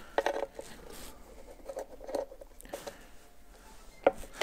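Flat-blade screwdriver scraping and clicking against the metal case of an engine control unit as it is worked in to pry the glued-down cover loose from its sealant. The sound is faint, a scattered run of small scrapes and ticks.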